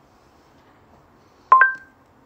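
A smartphone's short two-note electronic beep about one and a half seconds in, a lower tone quickly followed by a higher one held briefly: the voice search chime signalling that the phone has stopped listening to a spoken Google query.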